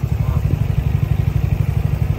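An engine idling: a steady low throb with an even, rapid pulse.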